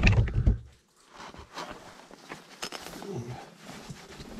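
Handling noise of a GoPro camera being set down: rubbing and bumping for the first second or so, then a few faint clicks and scrapes against rough lava rock.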